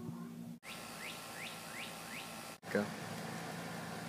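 A bird calling: five short rising chirps, about three a second, set between two abrupt breaks in the sound.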